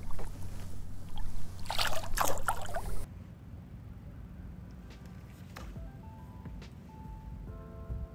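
Water splashing as a smallmouth bass is let go by hand at the water's surface, loudest about two seconds in. After an abrupt drop about three seconds in, faint background music of soft held notes follows.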